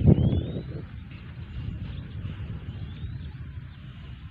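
Wind buffeting the microphone: a loud gust right at the start, then a steady low rumble. Faint rising chirps come and go above it.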